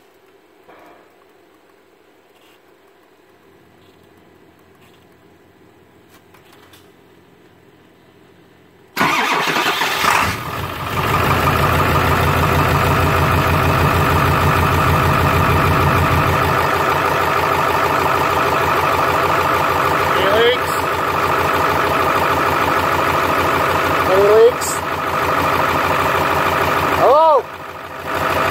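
Ford 7.3L Power Stroke V8 turbo-diesel cold start: after a quiet wait it cranks and fires about nine seconds in, runs unevenly for several seconds, then settles into a steady, loud idle.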